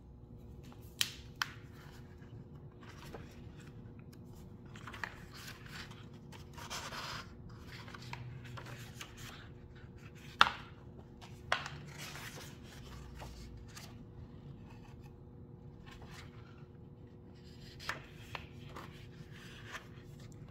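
A hardcover picture book being handled and its pages turned: paper rubbing and rustling, with a few sharp taps and clicks, over a faint steady hum.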